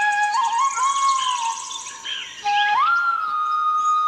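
Indian flute music: a held flute note slides up about half a second in, sinks and fades near the middle, then glides up to a higher held note that carries on to the end.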